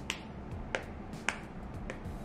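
Small snap hair clip clicking as it is flexed open and shut in the fingers: four sharp clicks, a little over half a second apart.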